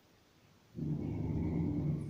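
A nursing mother dog's low growl, a warning as she guards her newborn puppies from a nearby hand. It starts suddenly under a second in and is held steadily.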